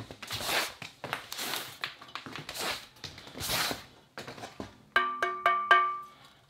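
Foam packing sleeves being pulled and rustled off a chair's five-star base, followed near the end by four quick knocks on the metal base that make it ring at several pitches.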